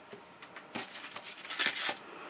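Paper crinkling and rustling as small scraps of paper and tape liner are handled, lasting about a second from partway in.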